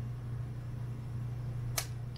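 A single sharp click near the end as the Sharp MT770 MiniDisc player's lid mechanism is worked by hand, over a steady low hum.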